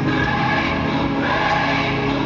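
Music with a choir singing, at a steady level.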